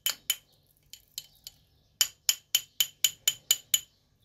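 A spoon knocking against the inside of a cut-glass tumbler while stirring a thick paste, making sharp, ringing glassy clinks. Two at the start and a few faint ones are followed by a quick run of about eight, roughly four a second, from about two seconds in.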